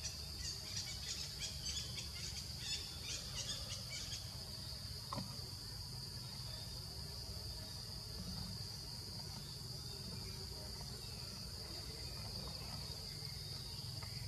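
Steady high-pitched drone of forest insects, with a run of short high chirps repeating a few times a second during the first four seconds.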